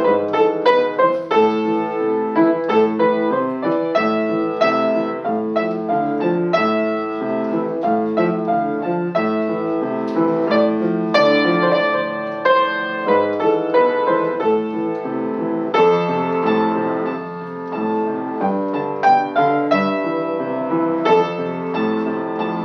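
Acoustic upright piano played continuously, a flowing run of struck notes and chords that ring on over one another.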